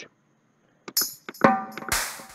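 Drum and percussion samples from the Purity software instrument's percussion kit, played one hit at a time to audition them. After about a second of silence come a few short hits, one with a ringing pitched tone, then a louder hit near the end with a long hissing tail.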